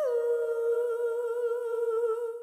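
A single sustained musical note, hummed or played, that slides down in pitch at the start and is then held with a slight wobble.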